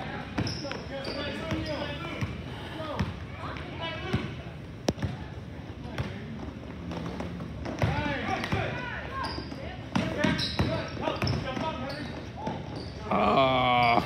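Indoor basketball game: the ball bouncing on a hardwood gym floor amid players' footsteps, with voices of players and spectators echoing in the large hall. A louder voice rises near the end.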